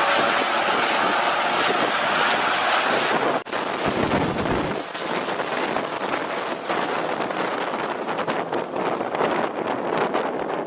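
Small twin-engine turboprop airplane running at takeoff power, a steady rush of engine and propeller noise mixed with wind buffeting the microphone. The sound breaks off abruptly about three and a half seconds in, then carries on.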